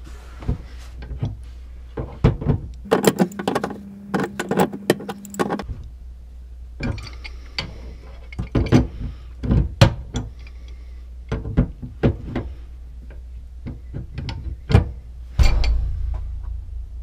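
Two steel pipe wrenches tightening a brass fitting onto a threaded gas supply pipe: irregular metallic clicks and knocks as the wrench jaws grip, turn and are reset, with a dense run of them a few seconds in.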